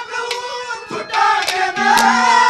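Male Haryanvi ragni singing through a stage PA: a long held note, then wavering, bending melismatic phrases from about a second in. A few sharp clicks cut across it.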